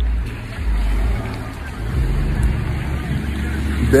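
A low, steady rumble of a motor vehicle's engine.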